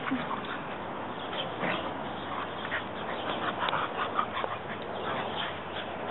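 Two beagles play-fighting: a string of short, scattered vocal noises and scuffles from their rough play.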